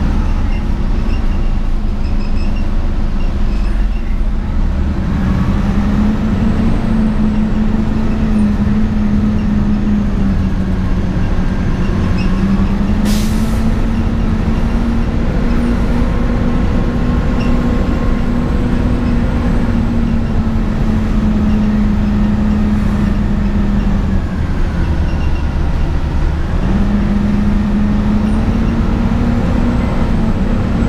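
2004 Gillig Advantage transit bus heard from inside the passenger cabin while under way: its drivetrain hum rises and falls in pitch several times as the bus speeds up and slows, over steady road noise. A brief hiss comes about 13 seconds in.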